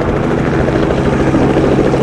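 Small helicopter in flight, its rotor beating in a rapid steady chop over a steady engine hum.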